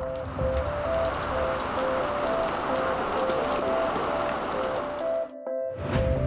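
Steady heavy rain falling, under soft background music with a slow repeating two-note melody; the rain cuts off suddenly near the end while the music carries on.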